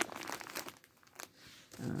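Crinkling and light clicking of handling noise close to the microphone, busiest in the first half-second and then dying down.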